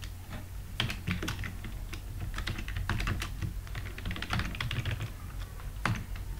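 Typing on a computer keyboard: a run of irregular keystrokes, with a louder click near the end, over a steady low hum.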